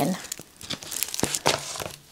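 Rolled diamond painting canvas being unrolled and laid flat on a wooden table, its plastic cover film crinkling with scattered crackles and light taps.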